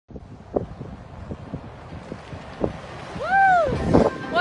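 Wind buffeting the microphone in an open-topped electric buggy on the move, with a few knocks. About three seconds in, a person gives one high call that rises and falls.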